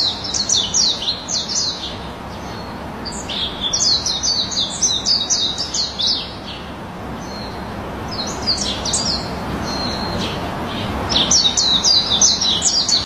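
A songbird calling in rapid series of short, high, down-slurred chirps, about five a second, in several bursts of one to three seconds, over a steady low hiss.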